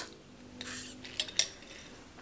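A short sip from a glass drinking jar, then two light clinks of glass as it is handled and set down.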